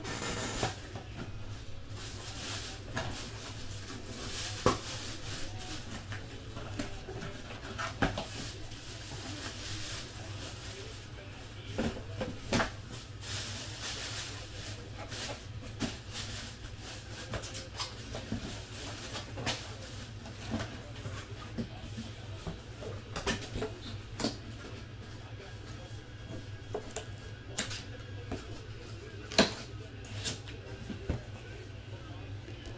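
Scattered light clicks and taps from objects being handled on a desk, with a few sharper knocks, over a steady low hum.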